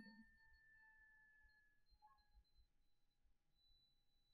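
Near silence: room tone with a few faint, steady high tones that fade away.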